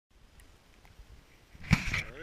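A short, loud burst of breath or voice from a man right at the camera, about three-quarters of the way in, after faint background.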